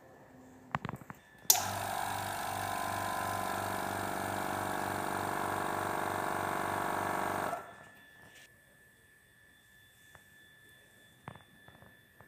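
A small electric machine switched on after a few clicks, running steadily for about six seconds with a slow low pulse of about three beats a second, then cut off suddenly.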